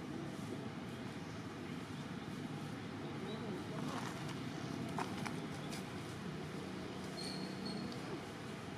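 Outdoor background noise with faint, indistinct voices, a couple of sharp clicks about five seconds in, and a short high whistle-like tone near the end.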